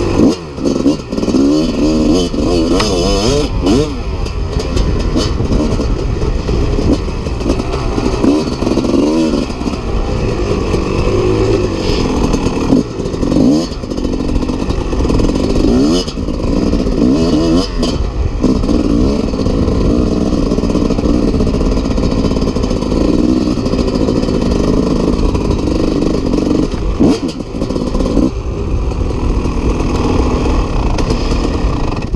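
1996 Kawasaki KX250 single-cylinder two-stroke dirt bike engine with an FMF Gnarly expansion-chamber exhaust, ridden hard: its revs rise and fall over and over as the throttle is worked, with a few brief drops where the throttle is shut.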